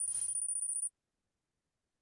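Kahoot quiz game's scoreboard sound effect: a short, high-pitched jingle lasting just under a second as the scores update.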